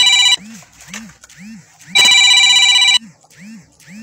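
Loud electronic telephone ring in bursts about a second long, one ending shortly after the start and another from about two to three seconds in. Between the rings a quiet pitched sound rises and falls about twice a second.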